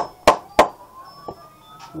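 Three quick, sharp knocks about a third of a second apart, then a single fainter one, from a hand knocking against the phone or the dip can close to the microphone.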